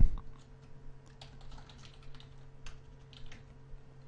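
Typing on a computer keyboard: a few faint, irregularly spaced keystrokes over a steady low hum.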